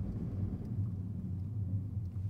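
Steady low hum of a moving car heard from inside the cabin: engine and road noise.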